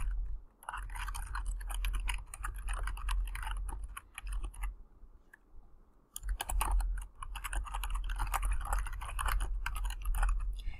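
Fast typing on a computer keyboard: a run of rapid keystrokes, a pause of about a second and a half just past the middle, then another run.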